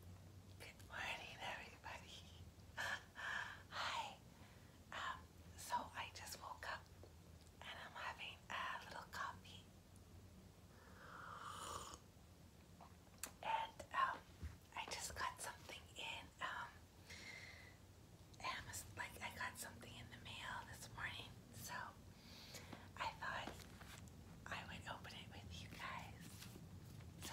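A woman whispering in soft, breathy bursts, with a low steady hum beneath.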